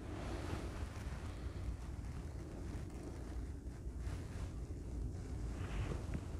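Steady low rumble with a faint hiss: background noise on the camera microphone, with no distinct event.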